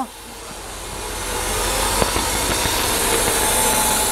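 Mercedes-Benz engine with KE-Jetronic fuel injection idling steadily during a fuel-pressure test, growing louder over the first two seconds, with a single click about two seconds in.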